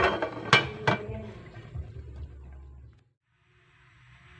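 Aluminium pot lid clanking twice against the rim of the steaming pot as it is set back on, with a short metallic ring after each clank. The duck is being covered again to steam longer because it is not yet tender.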